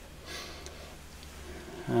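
Low, steady electrical hum from a powered-up valve guitar amplifier just taken off standby, with a soft breath about a quarter of a second in.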